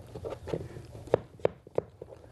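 Chinese cleaver slicing mushrooms on a cutting board: a few soft knocks, then three sharp chops of the blade on the board in the second half.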